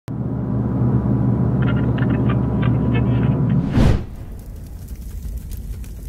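Low droning rumble with a faint steady high tone, ending just before four seconds in a short, loud whoosh-like burst, after which it falls to a quieter hiss.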